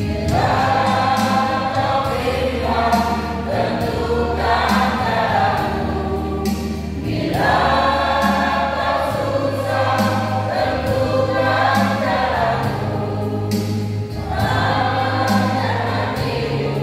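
Mixed choir of women's and men's voices singing a hymn in phrases with short breaks between them, over an instrumental accompaniment with sustained bass notes. The voices come in right at the start.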